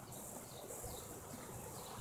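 Quiet outdoor background with a few faint, high bird chirps.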